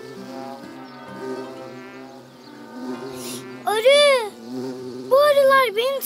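Cartoon bee buzzing effect over light background music: a loud swooping buzz that rises and falls in pitch about four seconds in, then a quick run of swoops near the end as the bee lands.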